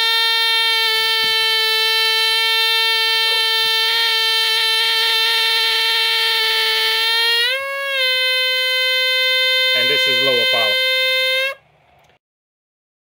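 ZOIC PalaeoTech Trilobite air scribe, a pneumatic fossil-preparation air pen, running free at full power on 90 psi line pressure: a steady, high buzz. About three quarters of the way through its pitch briefly swings up and the level dips, then it runs on slightly higher before cutting off suddenly near the end.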